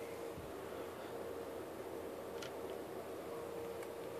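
Faint steady electrical hum from the bench circuitry over low room hiss, the hum dropping out briefly twice, with one light click about two and a half seconds in.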